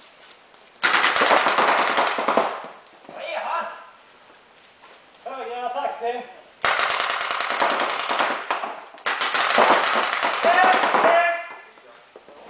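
Reball markers firing long rapid volleys of rubber balls in a large gym hall: three bursts of fast shots, the first about a second in and two close together in the second half. Players' voices call out between the bursts.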